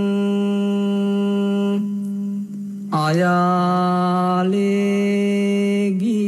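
Buddhist devotional chant: a single voice holds long, steady notes. It breaks off for about a second, two seconds in, then slides up into a new held note.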